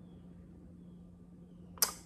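Quiet room tone with a steady low hum, then near the end a single sharp lip smack as a man's mouth opens to speak.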